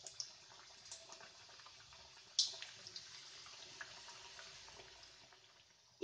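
Hot oil in a kadhai sizzling faintly with small crackles as gujiya pastries deep-fry on a low flame. One sharper burst of sizzle comes about two and a half seconds in, and the sound fades out near the end.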